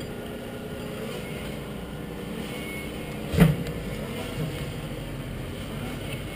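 Steady low engine rumble, with one sharp knock about three and a half seconds in.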